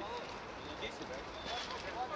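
Scattered, distant shouts and calls of football players across an open outdoor pitch, over a steady background of outdoor noise.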